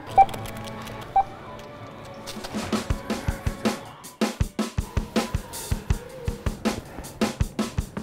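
Two short beeps from a self-checkout barcode scanner in the first second or so, then background music with a steady beat.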